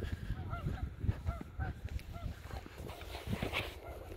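Footsteps crunching over plowed dirt, with a low rumble of wind on the microphone. Over them a distant bird calls a run of about eight short, evenly spaced honking notes in the first two and a half seconds.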